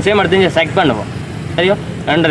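Speech: a person talking without a break, over a steady low background hum.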